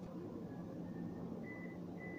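Microwave oven keypad being pressed: faint short high beeps, about two a second, in the second half over a steady low hum.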